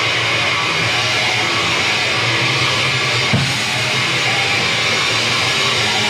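Death metal band playing live: bass guitar and drum kit in a dense, steady wall of sound, with one heavy accent hit a little past the middle.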